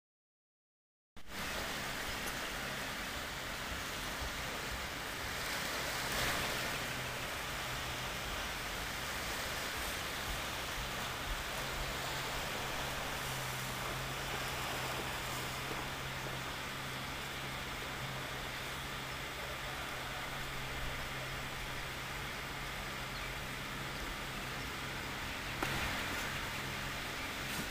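Steady outdoor background noise: an even hiss with a faint low hum beneath it, starting suddenly about a second in after silence.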